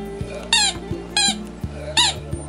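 Shih tzu 'singing' along to music: three short, high-pitched whining cries about 0.7 s apart, each bending in pitch, over background guitar music.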